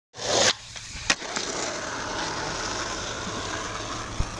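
Skateboard wheels rolling on asphalt in a steady grinding rush, with a loud burst right at the start and a single sharp clack about a second in.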